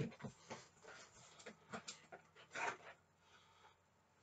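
Faint rustling and small knocks of something being fetched and handled, an irregular run of short sounds with a louder rustle a little past halfway, dying down near the end.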